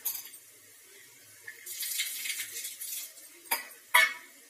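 Kitchen utensils clinking against cookware. There is a patch of clattering in the middle, then a sharp click, and a louder ringing clink at the very end.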